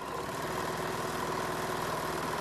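Electric sewing machine running at a steady speed, stitching a seam with a rapid, even whir.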